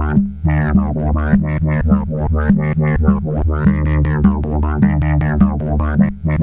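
Eurorack modular synthesizer patch: short pitched synth notes repeat about three times a second over a steady low bass tone. Their brightness swells and falls in arching sweeps as the envelopes open and close.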